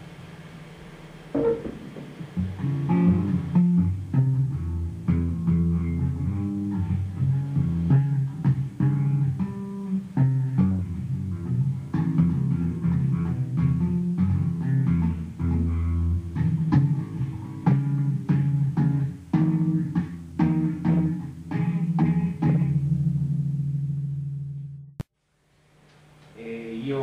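Electric bass guitar laid flat across the lap and played with both hands on the fretboard. A fast, irregular run of low plucked notes starts about two seconds in and ends on a held note that fades out just before the end.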